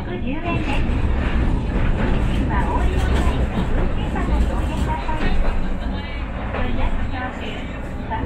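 Tram running along street track heard from inside the car: a steady low rumble of motors and wheels, with indistinct voices over it.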